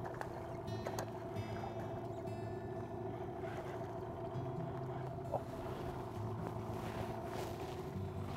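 Small outboard motor idling steadily on the boat, a low, even hum.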